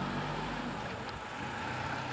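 Steady outdoor background noise with a low rumble, like a vehicle or traffic in the street.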